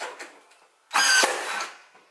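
Ryobi cordless nailer driving a nail into baseboard trim: a brief motor whine about a second in, ending in a sharp shot as the nail fires, with a few faint clicks before it.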